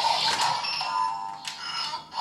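Electronic music and sound effects from a toy transformation blaster: a short falling electronic tone, then a steady synthesized jingle.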